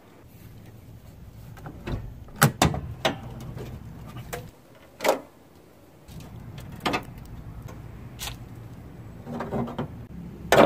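A scattered series of sharp clicks and knocks from hands handling parts and tools, the loudest a few seconds in. A low steady hum comes in about six seconds in.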